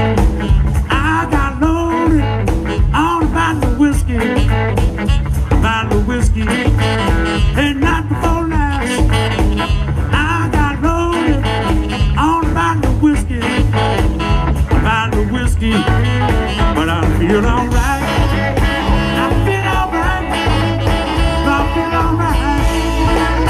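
Blues band playing live: a saxophone solo over electric guitar, electric bass and drums keeping a steady beat.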